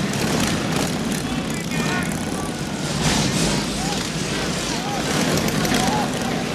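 Several motorcycle engines running together as a group of bikes rolls in, a steady low rumble with voices calling out over it.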